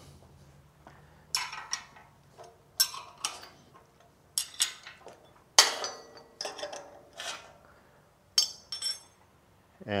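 Steel hand tools and clamp hardware clinking against the cast-iron milling machine table as the setup is taken apart: about ten sharp, irregular metallic clinks, a few ringing briefly near the end.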